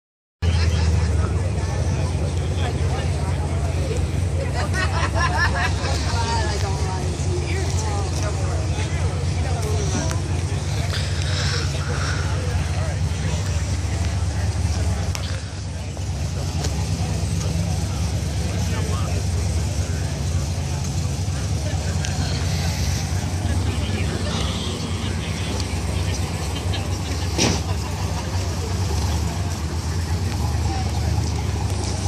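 Ford Mustang Boss 302R's V8 idling steadily, a low even engine note that does not change.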